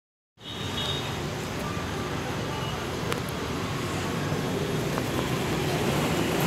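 Steady low rumble of an approaching train, slowly growing louder.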